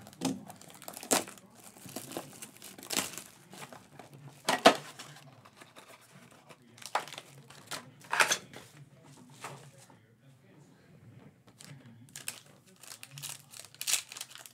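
Handling and opening a Panini Crown Royale basketball card box and its foil-wrapped pack: scattered bursts of crinkling and tearing foil and cardboard, with a few sharp knocks in between, the sharpest a little before the middle.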